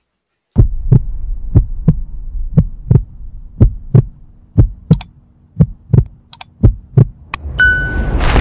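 End-card sound effects: a low hum with a heartbeat-like pulse of paired low thuds about once a second. Near the end comes a bright bell ding, then a rushing swell.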